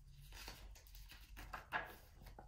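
Faint rustling and handling of a hardcover picture book as a page is turned: a series of soft, brief paper and cover sounds.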